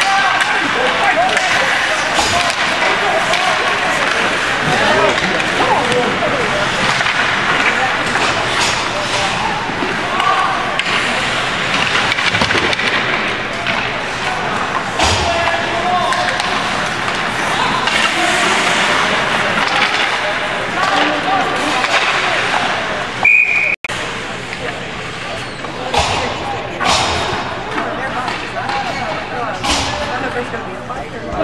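Indoor ice rink during a youth hockey game: continuous spectator chatter and shouting echoing in the arena, with scattered clacks of sticks and pucks. A short, high referee's whistle blast sounds about two-thirds of the way through, and the audio drops out for an instant just after it.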